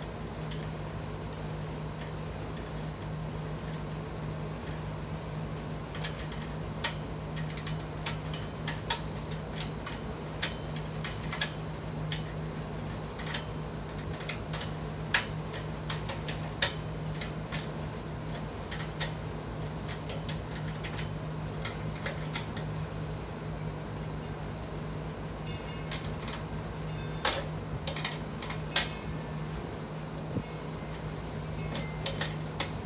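Irregular metal clicks and clinks of a wrench, nuts and washers on a caster's mounting bolts and the steel tray of a tool cart, as the caster is refitted with lock washers. The clicks come in two bunches, one in the first half and one near the end, over a steady low hum.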